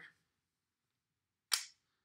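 A single sharp click about a second and a half in, as Montessori fraction skittle pieces knock together while being gathered.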